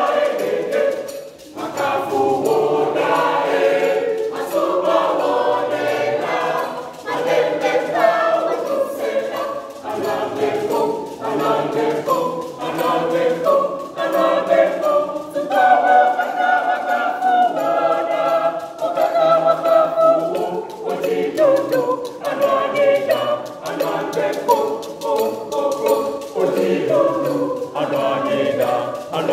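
A junior church choir of boys and girls singing a song together in many voices.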